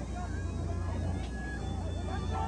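Distant voices calling out over a steady low drone, with no commentary.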